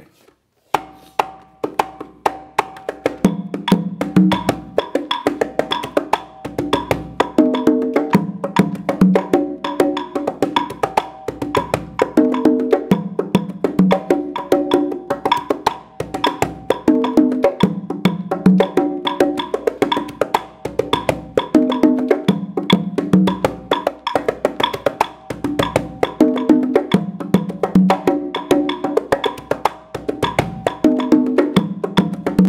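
Three conga drums played in a guarapachangueo pattern against a steady wooden clave rhythm, starting about a second in. Only the pattern's fixed first and last bars are played, the anchoring points of the three-drum part. Drum tones ring out at a few distinct pitches.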